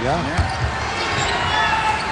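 Basketball being dribbled on a hardwood court, with steady arena crowd murmur behind it.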